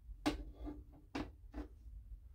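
A few faint, short clicks and knocks, about four in under two seconds, as a hand picks up a small computer component from beside a motherboard on a desk.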